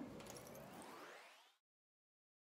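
Near silence: faint room tone fading out over about a second and a half, then dead silence where the recording cuts off.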